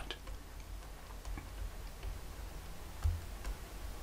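Faint, irregular ticks of a stylus tapping and writing on a tablet, over a steady low hum, with one soft low thump about three seconds in.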